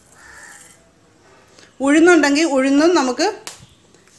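Faint hiss of hot oil in a frying pan where mustard seeds have just been added. About two seconds in, a woman speaks for a second and a half, and a single sharp click follows near the end.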